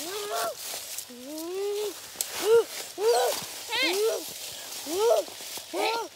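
A dog whining and yipping over and over: short, high calls about once a second, with one longer, drawn-out whine about a second in.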